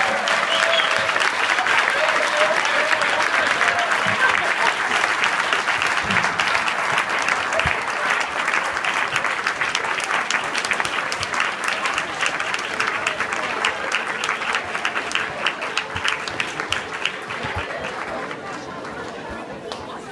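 Audience applauding: a dense, steady clapping with a few voices calling out in the first few seconds, thinning and fading near the end.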